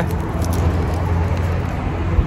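Steady low rumble of road traffic, with a faint click of plastic packaging being handled about half a second in.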